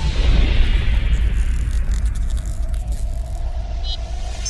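Outro logo-sting sound effect: a sudden deep boom that opens into a long low rumble, with a hissing fizz above it that slowly fades. A faint steady tone comes in partway through, and a short bright chime sounds near the end.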